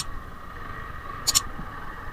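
Steady motorcycle running and road noise while riding a rough dirt track. About a second in comes a sharp double mouse click, the sound effect of the like/subscribe animation.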